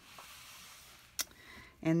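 Paper and cardstock being handled as a file-folder flap is flipped up: a faint soft rustle, with one sharp tap just over a second in.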